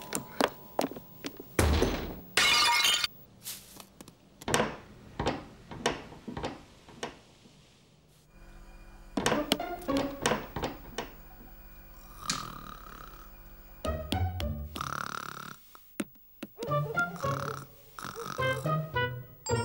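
Cartoon soundtrack of music with comic sound effects. A quick run of knocks and thuds comes first, with a loud noisy crash about two seconds in; after a quieter middle stretch, a brief busy passage of plucked-sounding notes comes near the end.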